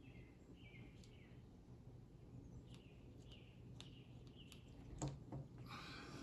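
Near silence, with a few faint clicks of small plastic and metal trigger-group parts being handled and a slightly louder click about five seconds in.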